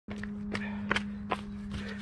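A handful of footsteps on a tarmac path, roughly one every third of a second, as two people walk into place. A steady low hum runs underneath.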